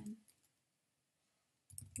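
Near silence, then a few soft computer keyboard keystrokes near the end as text is typed.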